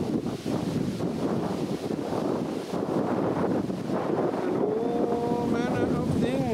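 Steady rushing wind noise. From about four and a half seconds in, a held tone comes in, rising slowly and wavering near the end.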